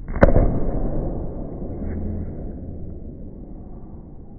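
A sharp slap as hands strike the top of a padded vault box during a kong vault, followed by a low rumble that slowly fades.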